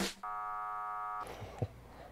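A steady electronic tone, about a second long and flat in pitch, starting just after the start: a beep-like sound effect edited in as a vote is added to the on-screen tally.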